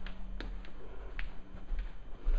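Low handling rumble from a handheld camera being carried, with a few light clicks scattered through and a faint steady hum.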